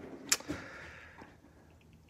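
A sharp knock about a third of a second in, with a fainter one just after.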